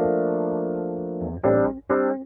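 Rhodes electric piano track from a multitrack mix, run through an Eventide H9 Rotary speaker-simulation plugin. It holds one chord for just over a second, then plays two short chord stabs.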